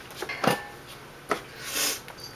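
Kitchen handling sounds at a wooden cutting board: three short knocks and a brief scrape near the end.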